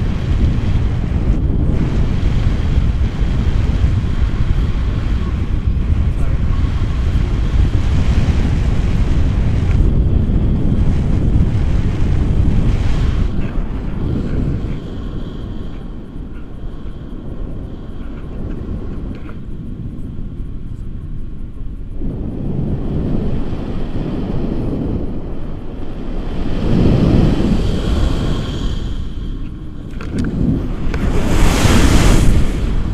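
Wind rushing over the camera microphone in flight under a tandem paraglider. It is loud through the first half, eases after about thirteen seconds, and swells again near the end.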